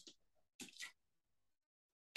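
Near silence: room tone, with two faint, brief hissy sounds a little over half a second in.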